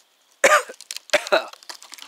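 Campfire coals crackling with small pops, broken by two short coughs, about half a second in and again a little over a second in.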